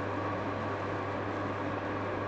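Pellet boiler firing on coffee-grounds pellets: a steady low hum with an even rushing noise from the burner's fan and fire, unchanging throughout.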